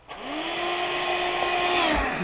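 Vacuum cleaner switched on, its motor whine rising in pitch as it spins up, running steadily, then dropping in pitch near the end, while its nozzle sucks at a man's scalp.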